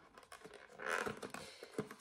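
Faint scratching and a few small clicks of a plastic cream tube's cap being worked open by hand, trying to get at the seal underneath without cutting it.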